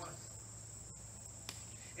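Crickets trilling in a steady high-pitched drone, with a faint low hum beneath and a single small tick about a second and a half in.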